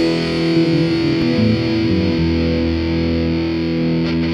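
Instrumental passage of a rock song: distorted electric guitar chords held over bass, with no singing.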